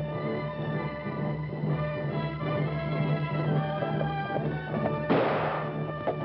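Orchestral film score with held string and brass chords, and a single loud, sudden hit about five seconds in.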